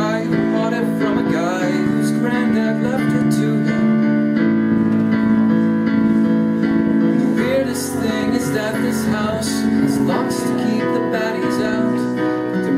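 Yamaha digital stage piano playing sustained chords, with a man singing over it.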